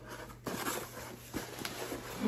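Gift packaging being handled and rustled as a present is unwrapped, with a few soft clicks.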